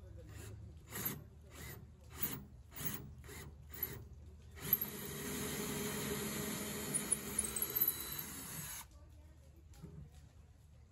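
Cordless drill working into a redwood 2x4 frame. It starts with a quick string of short bursts over the first few seconds, then runs steadily for about four seconds and stops suddenly.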